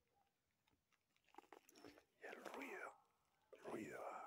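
Near silence for about the first second, then a faint, murmured voice in short phrases.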